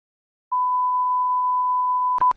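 Steady electronic test-tone beep, the reference tone played with television colour bars. It comes in about half a second in and holds one unchanging pitch.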